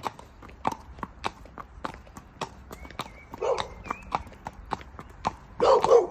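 Horse's hooves clip-clopping at a walk on brick paving, about two to three hoofbeats a second. A short louder noise comes about three and a half seconds in and another near the end.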